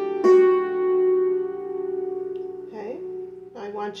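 Hammered dulcimer: the D string at the second marker is struck once with a wooden hammer just after the start, then rings on with a long, slowly fading sustain. A woman's voice comes in over the ringing near the end.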